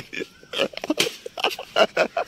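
Boys' voices in short, rapid bursts of laughter and yelps, with a few sharp knocks.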